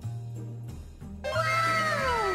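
Background music with a pulsing bass beat. A little over a second in, a louder, drawn-out meow-like call comes in over it and slides steadily down in pitch.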